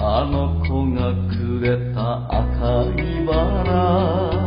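Background music: a wavering sung or chanted voice over a bass line of held notes that change about once a second, with regular sharply struck notes.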